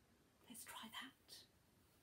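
Near silence, broken a little after the start by a woman's few faint, whispered words.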